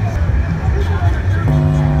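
A recorded backing track for a gospel song starts about one and a half seconds in with steady held chords, over a low rumble of street background and voices.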